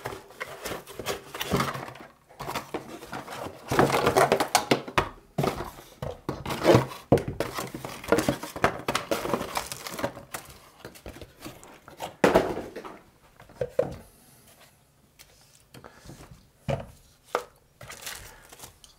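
Cardboard box and packaging rustling as a soldering station is unpacked, its plastic parts and cables lifted out and set down on a desk mat with light knocks, quieter for a couple of seconds near the end.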